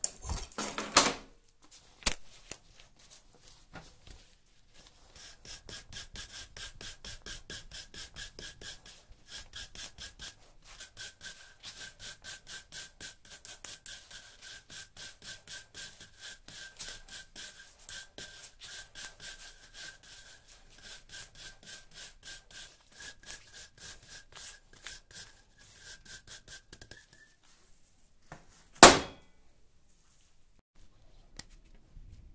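Wire cup brush scraping along a chainsaw chain in quick, even strokes, several a second, cleaning the chain. It starts a few seconds in and stops near the end. A few knocks of metal being handled come first, and a single loud knock comes near the end.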